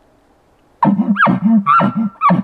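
Bull elk call imitated through a bugle tube, starting about a second in: a quick glide up to a high whistle, then deep grunting chuckles under a held high note, pushed from the chest with a sharp cutoff.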